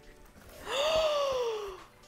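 A person's long, breathy gasp of amazement, its pitch rising briefly and then sliding down over about a second.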